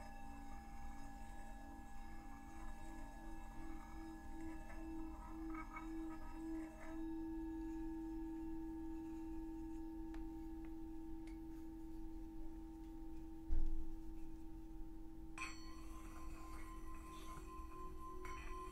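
Himalayan singing bowls ringing with long sustained tones, the low tone pulsing slowly at first and then settling into a steady hum. A dull low thump sounds about three-quarters of the way through, and shortly after another bowl is struck, adding higher ringing tones.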